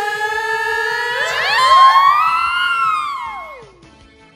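Cartoon theme song, with the last syllable of the title line held as a long sung note. It swoops upward and then slides back down, fading out near the end as the song drops into a quiet instrumental break.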